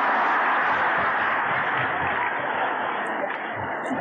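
A large audience applauding steadily, easing off slightly toward the end.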